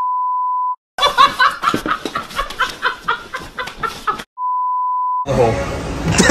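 A steady 1 kHz test-tone beep, the kind played with TV colour bars, lasting about a second, then about three seconds of someone laughing in quick rising and falling bursts, then the same beep again for about a second near the end.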